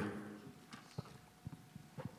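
A few faint, short knocks and clicks in an otherwise quiet room, a handheld microphone being handled and set down on a small wooden table.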